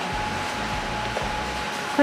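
Steady indoor ventilation noise: an even hiss of moving air with a faint steady hum running through it.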